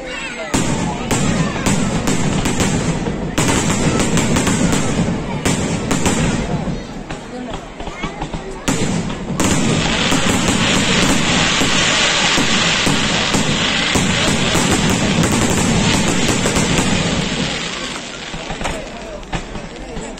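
Aerial firework shells being fired and bursting in quick succession, a rapid run of bangs. From about halfway through they merge into a dense, unbroken crackling barrage that thins out near the end.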